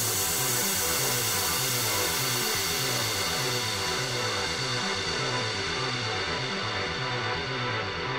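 Background music with a steady, evenly repeating bass pattern under faint sustained tones, its high end slowly fading.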